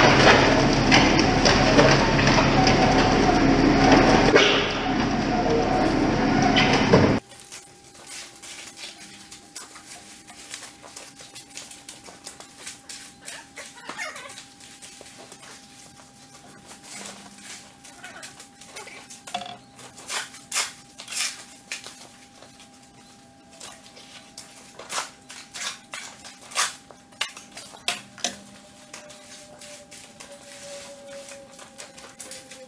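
For about the first seven seconds, a telehandler engine runs while wet concrete rushes out of its mixer bucket in a loud continuous pour. It then cuts to much quieter sharp clicks and scrapes of a shovel and a rake working the wet concrete.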